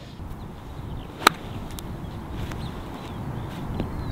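A single crisp click about a second in as a 60° wedge pinches a golf ball cleanly off a tight lie on a short pitch. Wind rushes steadily on the microphone.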